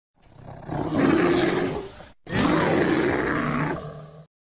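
Roar sound effect of a bear, in two long roars of about two seconds each, with a short break between them just after two seconds in.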